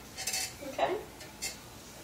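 A handheld phone being moved close behind a head of long curly hair, giving a few short scraping, rustling handling noises as hair and fingers brush against it.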